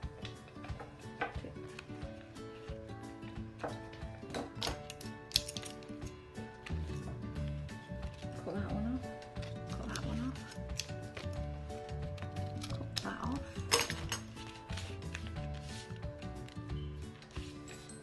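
Background music with scissors snipping through paper card and paper being handled. The two sharpest snips come about five seconds in and again near fourteen seconds.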